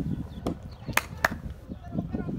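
Low wind rumble on the microphone, with three sharp cracks about half a second in, a second in and just after.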